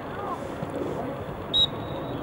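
A single short, high whistle toot about a second and a half in, as from a soccer referee's whistle, over a steady murmur of indistinct voices across the field.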